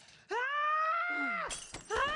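A woman's high-pitched scream held for about a second, rising at the start and dropping away at the end. A lower falling groan sounds under its end, and another cry starts just at the close.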